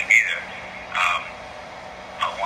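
Speech heard over a telephone line: short spoken fragments near the start and about a second in, then a pause in which a low steady hum remains.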